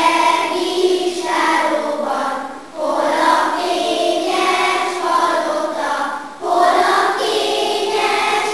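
Children's choir singing, the phrases broken by brief breaths about three and six and a half seconds in.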